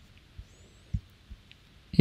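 A few soft, low clicks and thumps, about four of them, the loudest about a second in: a computer mouse being clicked and handled while an image is selected, picked up faintly by the microphone.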